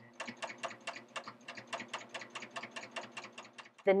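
Serger sewing a fabric strip through a belt loop binder attachment at a slow, even speed: a steady motor hum with about six needle-stroke clicks a second. It stops just before the end.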